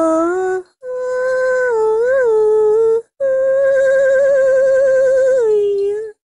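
A solo voice humming a slow wordless melody: long held notes with brief breaks between them, the middle note bending up and back down, and the last one wavering slightly before it drops lower near the end.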